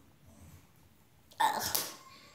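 A girl's short, sharp burst of breath or voice, sudden and loud, about one and a half seconds in and lasting about half a second.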